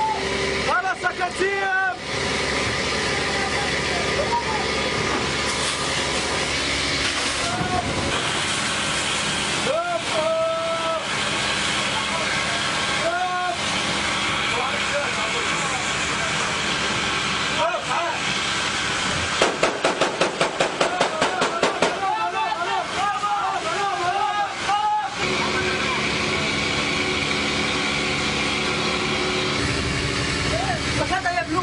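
Steady rushing noise of a boat at sea with voices calling out over it. A little past the middle comes a rapid run of about a dozen evenly spaced bangs lasting some two and a half seconds, a burst of automatic gunfire.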